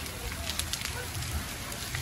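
A large RV fire burning, with scattered crackles and pops over a steady low rumble.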